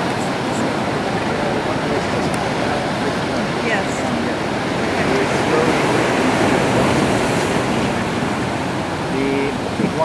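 Sea surf washing against a rocky shore: a steady, loud rushing of water.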